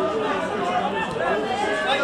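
Football spectators chatting: several voices talking over one another at once, with no words standing out.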